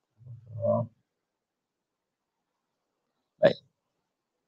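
A man's brief vocal sounds: a low hesitant 'mm-uh' in the first second, then silence, then a single short, sharp utterance near the end.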